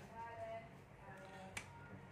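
A single sharp click of a power switch being flipped on for the AC-to-DC power adapter, about one and a half seconds in, against a quiet background.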